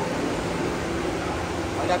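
Steady background noise with indistinct voices talking in the distance; a man's voice starts up close near the end.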